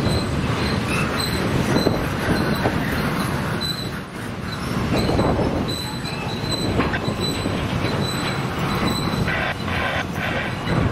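Double-stack intermodal well cars of a freight train rolling past on the rails: a steady rumble and clatter of steel wheels, with faint short high-pitched squeals that come and go.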